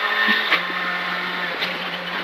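Rally car engine running at a steady pitch in fourth gear, heard from inside the cabin, with tyre and gravel noise under it and a couple of faint knocks.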